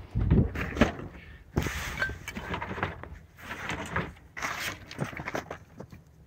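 Hands rummaging through curbside trash: plastic bags rustling and crinkling and objects shifting in a plastic bin, in irregular bursts, with a couple of heavier thumps in the first second.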